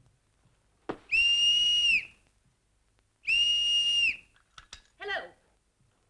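A whistle blown in two long, steady, high blasts, each just under a second, with a short pause between them. A brief voice-like sound follows near the end.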